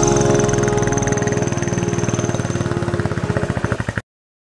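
Motorcycle engine running with a regular pulsing beat, fading out steadily until it cuts off at the end.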